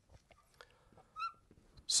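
Marker pen writing on a glass board: faint taps and scratches of the tip, with one short high squeak about a second in.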